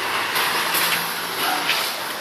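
A motor vehicle passing on the road: a steady rush of tyre noise with a faint low engine hum through the middle.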